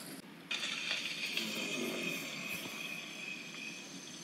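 Faint steady background noise with a thin high-pitched band, beginning about half a second in, with no distinct event.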